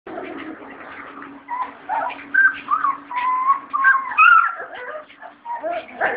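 Puppies whining and yelping in many short high cries that slide up and down in pitch, one after another, over a steady low hum that fades out near the end.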